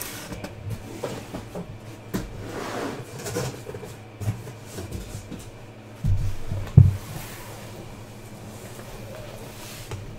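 Shrink-wrapped Topps Museum Collection card boxes being handled and set down on a table: scattered knocks and rustling, with a few heavier thumps about six to seven seconds in, the loudest just before seven seconds.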